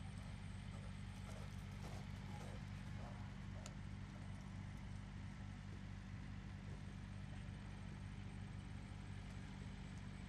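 Steady low hum of outdoor background noise, with faint distant voices and a few sharp clicks in the first few seconds.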